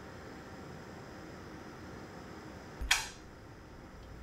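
Faint steady hiss, broken about three seconds in by one sudden sharp crack with a short low thud at its start, dying away within a fraction of a second.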